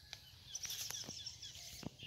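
Faint bird chirps, bunched about half a second to a second and a half in, over quiet outdoor background noise, with a few short clicks.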